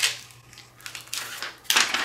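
White backing paper being peeled off a vinyl decal held on transfer tape: light crackling and paper rustle, with a short run of small clicks about a second in.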